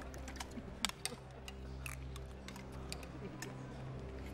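Metal spoons clinking and scraping against tin mess tins, a scatter of small irregular clicks with one sharper click about a second in, over a low steady background drone.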